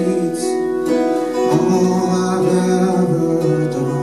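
Acoustic guitars playing a song live.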